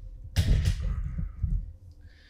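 Handling noise from a camera being moved and repositioned by hand: low thumps and bumps, with a brief rustle about half a second in, dying away near the end.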